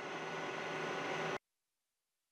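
Steady low hum and hiss of room tone, with no speech, cutting off abruptly about one and a half seconds in to complete silence.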